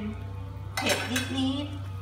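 A metal spoon clinking against the wok of simmering fish soup, two sharp clinks about a second in, over a steady low hum.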